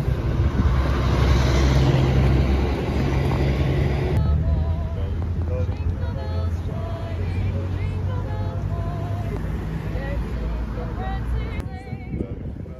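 Steady low rumble of a motor vehicle running close by, loudest in the first four seconds, with faint carol singing by a small group of voices underneath.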